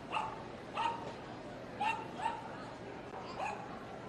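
A small dog barking: five short, high-pitched yaps over about three seconds, two of them close together a little before the middle, over a steady hall murmur.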